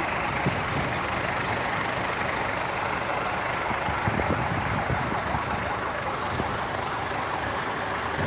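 Lorry engines running nearby, a steady even noise with a few faint knocks.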